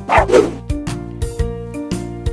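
A short cartoon yelp-like sound effect in two quick pulses, under half a second long, just after the start, over a children's song instrumental with a steady bouncy beat.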